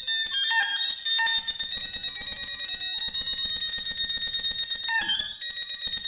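Improvised electronic music: a high, bell-like ringing tone with a fast flutter in it, held from about a second in until about five seconds, with shorter high notes before and after it over a quick pulsing low layer.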